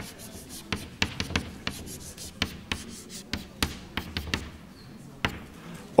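Chalk on a blackboard: a quick run of short taps and scratchy strokes as lines are drawn, about fifteen in four seconds, then a pause and one last stroke near the end.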